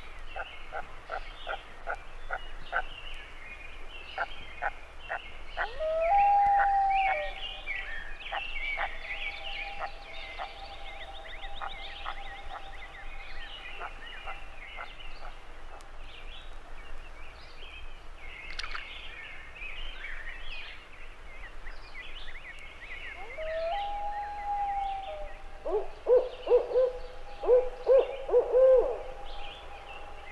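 Common loons calling on a lake at night: a long, held wail about six seconds in, then near the end a yodel, a rising note that breaks into a series of loud, repeated undulating phrases. A dense chorus of small high calls runs underneath.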